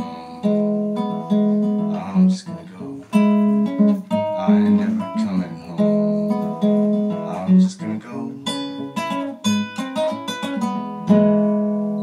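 Classical (nylon-string) acoustic guitar played solo, picked notes and strummed chords in a steady rhythm. About a second before the end a chord is strummed and left to ring, fading away.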